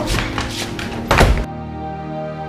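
A heavy thump at an office door during a scuffle, about a second and a quarter in, over steady background music; from about halfway on, the music plays alone.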